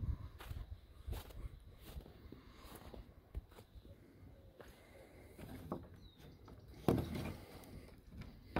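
Faint, irregular footsteps on snow and grass.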